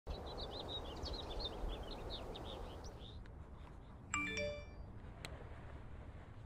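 Small birds chirping repeatedly over a low outdoor rumble for the first three seconds. About four seconds in comes a short chime of a few notes stepping upward.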